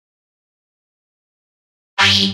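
Dead silence, then just before the end a loud, pitched, effects-distorted sound cuts in abruptly.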